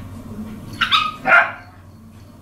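Small dogs playing, one giving two short, sharp barks about a second in, half a second apart.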